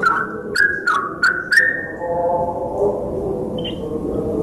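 Yellow-vented bulbul calling: a short phrase of about four quick notes, each starting with a sharp click, in the first two seconds. A steady, low, held tone follows from about halfway through.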